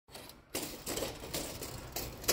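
Close handling noise: rustling with several sharp, irregular clicks, starting about half a second in, as a sleeve brushes the microphone and a tape measure is held against a metal board.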